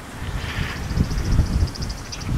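Wind buffeting the microphone in low, gusty rumbles. Behind it is a rapid, high-pitched chattering call from guinea fowl, about a dozen notes a second, starting about half a second in.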